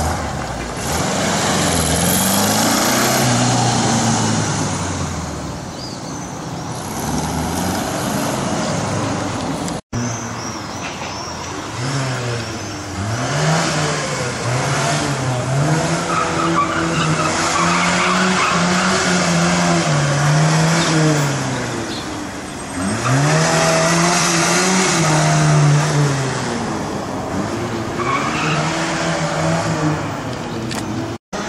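Classic car engines revving up and dropping back again and again as they accelerate, brake and turn through a cone course. First comes a Volkswagen Beetle's air-cooled flat-four. After a break about ten seconds in, another car follows with a series of rising and falling revs.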